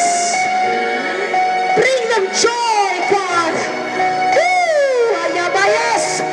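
Worship music of long held chords with voices praying or singing over it; one voice swoops up and falls away near the end.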